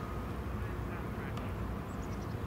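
A few short quacking calls, like a duck's, about a second in, over a steady low rumble of harbour background.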